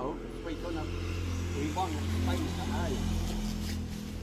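Low rumble of a passing motor vehicle, swelling about a second in and fading near the end, under faint voices.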